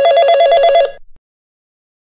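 Telephone ringing with an electronic trill that flips rapidly between two pitches, one ring just under a second long that cuts off suddenly.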